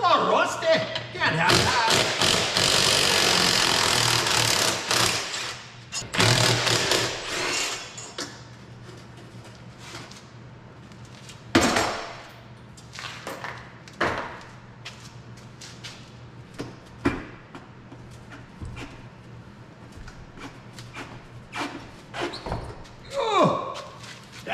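A cordless power tool running on a bolt for about three and a half seconds, then again briefly, followed by several sharp metal clanks and knocks of parts and tools being handled.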